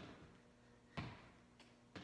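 Faint thuds of sneakered feet landing on a hardwood floor during butt kicks, three short knocks about a second apart.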